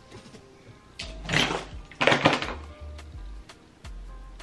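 Two loud rustling bursts, about a second and two seconds in, from a long curly human-hair lace frontal wig being pulled and settled onto the head by hand. Soft background music with steady notes runs underneath.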